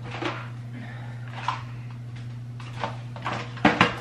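Small handling noises of objects being picked up and moved, ending in two sharp clicks close together, over a steady low hum.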